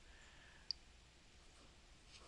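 Near silence: room tone, with one faint, short click about a third of the way in.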